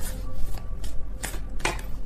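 A deck of tarot cards being shuffled and handled, with several short sharp card snaps spread through the two seconds.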